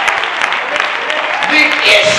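Church congregation clapping, with voices calling out over the applause, louder near the end.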